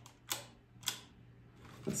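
Two sharp clicks about half a second apart from a modified Holga camera with a Polaroid back as its shutter is fired to take a picture.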